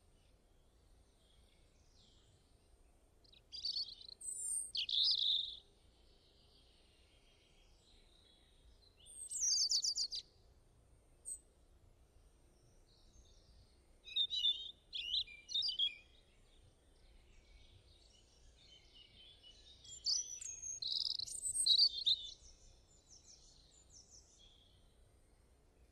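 Small birds chirping and singing in four short bursts a few seconds apart, over a faint steady background hum.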